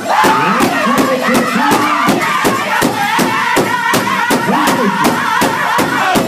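Powwow drum group singing in full-voiced, high-pitched unison over a large shared powwow drum struck on a steady beat, about three strikes a second. A long high note is held through the middle.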